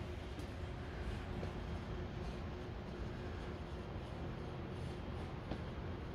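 Quiet steady background rumble and hum of a large hall, with a faint steady tone and a couple of light clicks.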